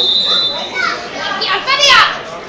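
A referee's whistle blown once, briefly, at the start, signalling the free kick to be taken. Then come several loud shouts from men's voices across the pitch, the loudest near the end.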